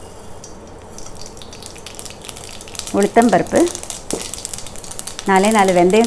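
Mustard seeds spluttering in hot oil in a ceramic-coated kadai for a tempering: scattered crackles begin about a second in and grow into a dense popping.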